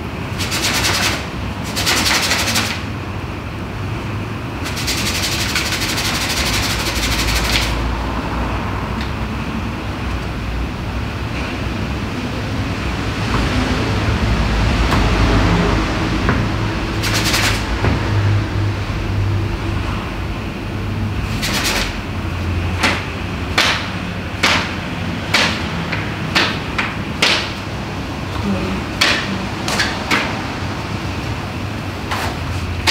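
A steady low hum and hiss, with a few short bursts of rushing noise in the first few seconds. In the last third comes a quick, irregular series of sharp knocks or taps, about a dozen in eight seconds.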